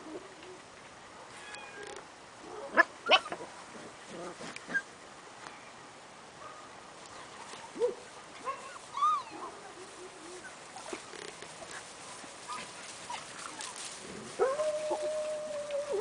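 Young dogs play-fighting, giving scattered short yips and whimpers, with a long held whine near the end.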